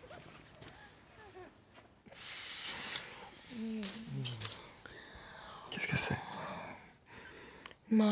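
Faint for about two seconds, then a man and a woman kissing in bed: breathy sighs, a short low murmur, and soft kissing smacks about six seconds in.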